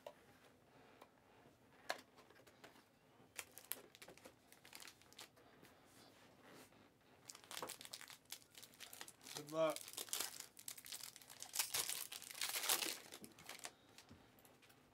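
Foil trading-card pack wrapper crinkling and tearing as a pack is ripped open, among scattered taps and rustles of card boxes and cards being handled; the crinkling gets busier and louder in the second half. A short voice sound comes about two-thirds of the way through.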